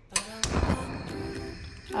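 Background music, with a gas stove burner being lit under a pot: a sharp click and then the short rush of the gas catching, about half a second in.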